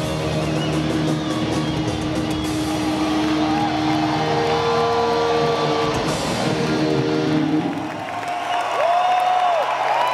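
Live rock band heard from the audience: long, held electric guitar notes over a low hum. The lowest sounds drop out about six seconds in, and near the end the guitar notes bend up and down.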